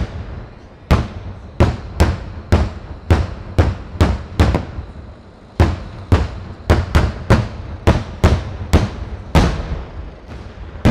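Daytime fireworks: aerial shells bursting in a rapid series of sharp bangs, about two a second, each trailing off in an echo, with a brief pause about halfway through.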